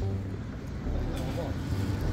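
Low, steady outdoor rumble with faint voices in the background.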